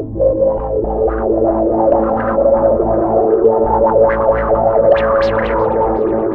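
Live electronic music: a Fender Jaguar electric guitar played through effects, its plucked notes ringing over a held modular-synth drone and a pulsing low bass. The guitar notes grow brighter and higher about four to five seconds in.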